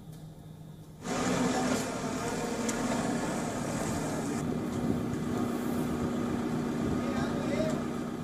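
Rescue-site sound: a vehicle engine running along with the voices of many people. It cuts in suddenly about a second in and then holds steady.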